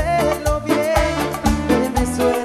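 Cumbia band playing an instrumental passage: a steady dance beat with bass, percussion and a melodic lead line.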